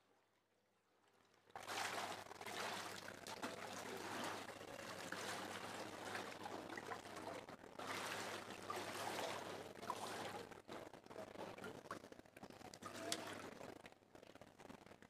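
Water sloshing and splashing as people wade into a baptistery pool. It starts about a second and a half in and surges louder twice.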